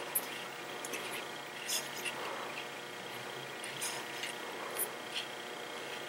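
Faint rustling of fingers handling fishing line as braid is wrapped around a fluorocarbon leader, with a few light ticks scattered through.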